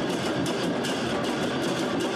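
Procession drums beaten in a fast, uneven rhythm, a few sharp strikes each second, over the dense noise of a crowd.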